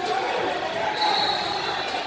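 Echoing crowd noise in a large sports hall: overlapping voices from spectators and coaches, with a thin steady high tone in the second half.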